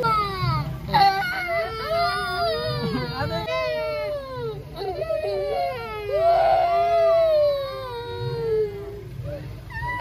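Young children crying: long, high, wavering wails and sobs, with the loudest, longest wail about six seconds in.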